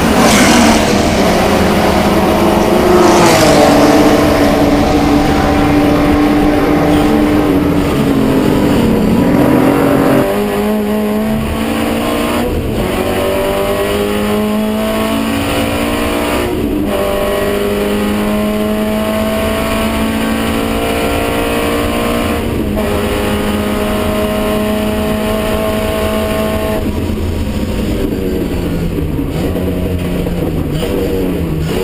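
Classic racing car's engine at racing speed, heard from inside the cockpit. The note drops as the driver backs off about ten seconds in, then climbs through the gears with a shift every four to six seconds, and steps up and down near the end as he brakes and shifts down.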